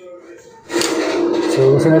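A person's voice from a narrated soundtrack, coming in suddenly and loudly about two-thirds of a second in after a faint stretch.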